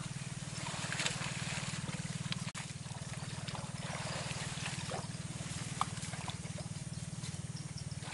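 A steady low hum with a fast pulse runs throughout. Over it come faint splashes and rustles of water and wet plants as people wade through a weed-choked pond.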